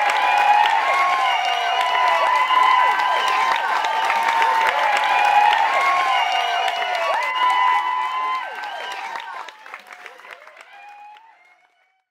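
Bar crowd applauding and cheering with shouts and whoops, fading out over the last few seconds.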